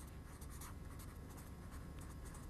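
Faint scratching of a pen writing, in short strokes.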